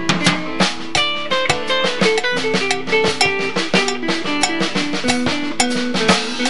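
A live band playing an instrumental passage in a Latin, salsa-like groove: electric guitar and other plucked strings over drums with a steady, quick beat.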